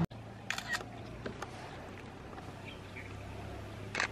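Camera shutter clicks: two sharp clicks about half a second in and a few fainter ticks later, over a low steady hum and quiet outdoor background.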